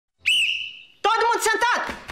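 A short high whistle tone that swoops up and fades out within a second, followed by a brief wavering voice-like sound that falls away at its end.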